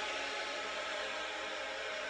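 Recorded choir singing a hymn, holding a chord, under a steady hiss.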